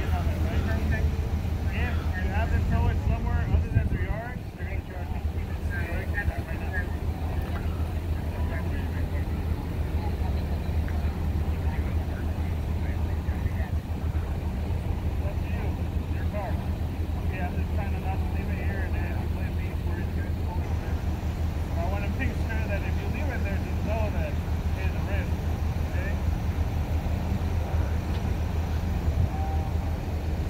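Steady low rumble of idling emergency-vehicle engines at an accident scene, with people talking at a distance.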